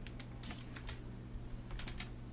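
A few faint, sharp clicks and rustles of handling over a steady low hum, with no music.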